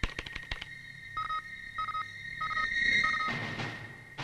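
Quick clatter of computer keyboard keystrokes, then four short, even electronic beeps from the computer, each about half a second after the last, over a steady high electronic tone. A burst of hiss follows near the end.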